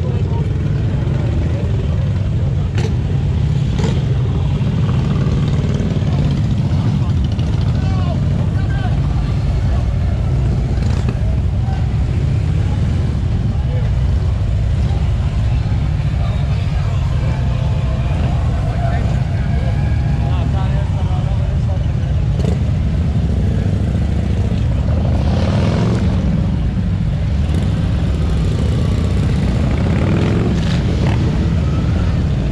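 Motorcycle engines running in a steady low rumble, with a crowd talking in the background; the rumble swells briefly near the end.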